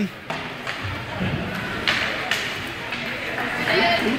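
Ice hockey rink during play: a steady wash of noise from skates and the arena, broken by a few sharp knocks of sticks and puck, with faint voices in the background and a voice rising near the end.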